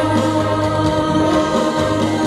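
Live pop song: a woman singing into a microphone over amplified electronic keyboard accompaniment, with notes held steadily.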